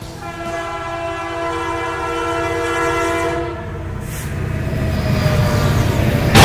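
Train sound effect: a multi-note train horn sounds for about three seconds over the low rumble and clatter of a moving train. The rumble grows louder toward the end.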